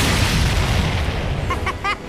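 Cartoon explosion sound effect: a loud boom with a deep rumble that fades away over the next second and a half.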